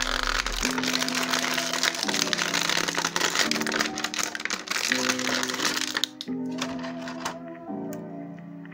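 Clear plastic bag crinkling loudly as an action figure is worked out of it; the crackling is dense and dies away about six seconds in, with a few more crackles near the end. Soft background music with repeating chords plays underneath.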